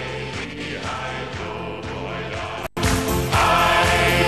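Music of a German folk song with a group of voices singing. The sound drops out for an instant just under three seconds in, then comes back louder.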